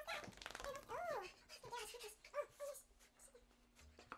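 Dog whining in a series of short rising-and-falling cries, with one longer arching whine about a second in.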